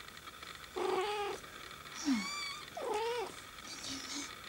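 Persian kitten mewing: three short high calls, the first about a second in and the other two close together in the second half.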